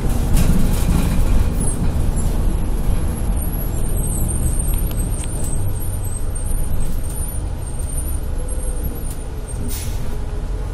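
Steady low rumble of a moving bus heard from inside the cabin: engine and road noise, with faint high squeaks a few seconds in.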